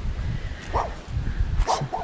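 A small dog barking, with short barks about a second apart.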